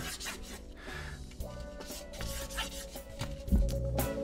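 Hand rubbing vinyl auto-body wrap down against the edge of a wooden drum shell in repeated short strokes, pressing the wrap flat. Quiet background music with a held note plays under it and grows louder near the end.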